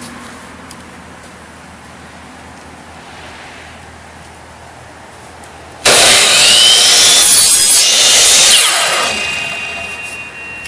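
Electric miter saw starting suddenly about six seconds in, its motor whining up to speed as the blade cuts through a paper rocket motor tube, then winding down over the last second. Before it starts there is only low background.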